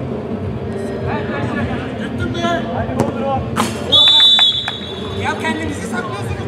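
Referee's whistle: one short, steady, high blast of about half a second near the middle, the loudest sound here, over players' shouts and calls.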